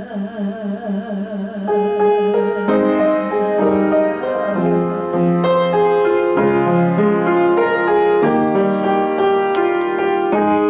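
A woman's voice holds a long sung note with vibrato to the piano, ending about two seconds in. The piano then carries on alone with chords and a melody.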